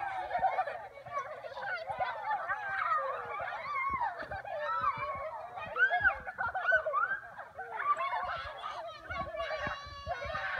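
Several children shouting and squealing at once while playing, with high, rising and falling cries overlapping throughout.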